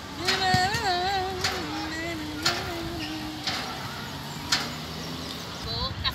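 Steel outdoor gym machine knocking about once a second as it is worked, with a drawn-out wavering tone over the first three seconds and traffic in the background.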